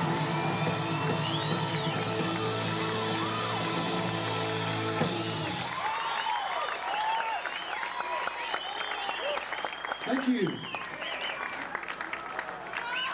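A live rock band's song ending on a held chord of guitars and keyboard, cutting off about five and a half seconds in. A large crowd then cheers and applauds.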